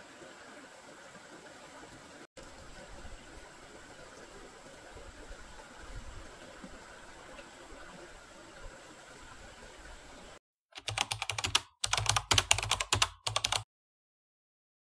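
Faint, steady outdoor background hiss. Near the end it cuts to silence, followed by three quick runs of loud, rapid keyboard-typing clicks, a typing sound effect as end-card text appears.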